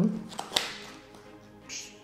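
Thin cardboard phone-box packaging being handled: one sharp tap about half a second in, followed by a brief papery rustle near the end, over faint background music.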